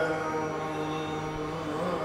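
Male Carnatic vocalist holding one long steady note in a Hindolam raga alapana, with the pitch bending near the end.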